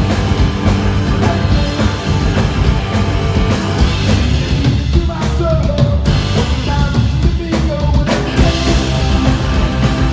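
Live punk rock band playing loud, with distorted electric guitars, bass and drums. About halfway through the playing turns sparser and stop-start for a few seconds, then the full band comes back in.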